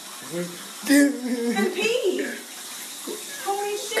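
Water running steadily from a clogged, overflowing toilet that keeps refilling, spilling onto the floor, with excited voices over it.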